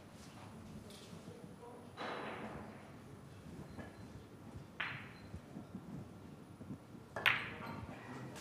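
Sharp clicks of cue and billiard balls during a heyball shot: a click about five seconds in and a louder, sharper crack just after seven seconds, with a softer knock about two seconds in.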